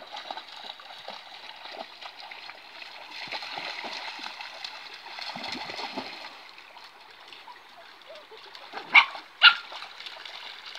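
Dogs splashing as they wade and tussle in a shallow stream, over a steady wash of running water, busiest a few seconds in. Near the end come two short, loud sounds about half a second apart.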